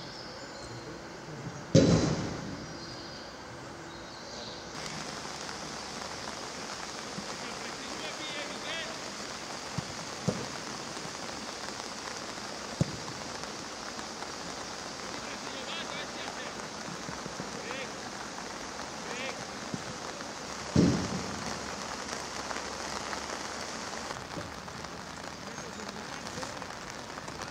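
Steady rain hiss on an open pitch. There is one loud thud about two seconds in, another about five seconds before the end, and a few sharp light knocks in between.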